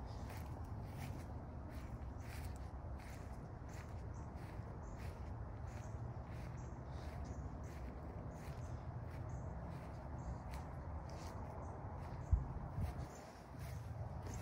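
Footsteps on grass while walking: a steady run of short swishing steps over a low rumble of wind or handling on the microphone, with a single bump about twelve seconds in.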